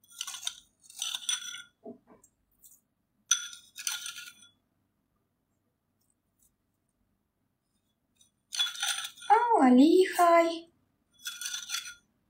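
Light metallic clinks of a small spoon against dishware as sugar is spooned in, in short groups in the first four seconds and again near the end. A short voiced hum comes about nine seconds in.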